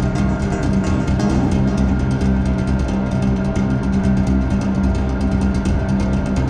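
Amplified 10-string Chapman Stick played by two-handed tapping: a dense stream of fast tapped notes over a held low bass note.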